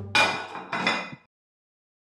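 Kitchenware clanking at a sink: two sharp, ringing metallic knocks about half a second apart, then the sound cuts off to total silence.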